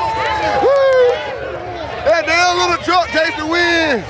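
Spectators talking, calling out and laughing over one another in an excited crowd.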